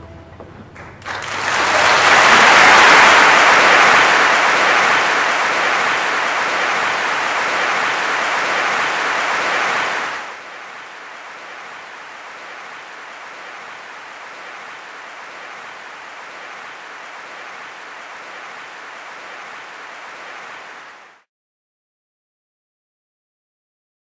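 An opera-house audience applauding, starting about a second in as the orchestra's final chord dies away. About ten seconds in the applause drops suddenly to a much softer level, then cuts off shortly before the end.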